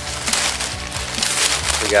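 Dry reed stalks rustling and crackling as someone pushes through them on foot, in quick irregular snaps and swishes.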